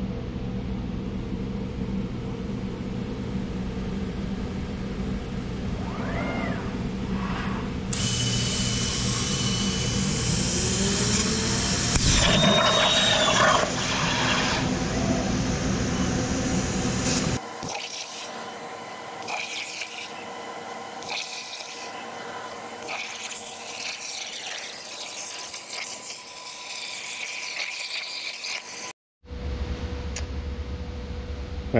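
CNC plasma cutting table cutting steel plate: a steady machine hum, then about eight seconds in the plasma arc starts with a loud, even hiss that stops suddenly about seventeen seconds in. A quieter hiss with thin whistling tones follows.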